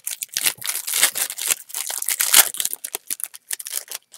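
Shiny foil trading-card pack wrapper (1997 Playoff 1st & 10 football) being torn open and crinkled by hand: a dense run of crackles, loudest a little over two seconds in, thinning out near the end.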